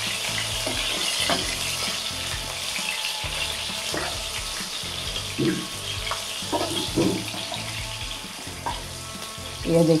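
Rohu fish steaks sizzling steadily as they shallow-fry in oil in a nonstick pan on a high gas flame, crisped and fried through on both sides. A wooden spatula scrapes and nudges them now and then, and the sizzle slowly eases.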